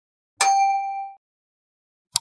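A single metallic ding: one sharp strike that rings with a clear tone and higher overtones, fading for under a second before it is cut off abruptly.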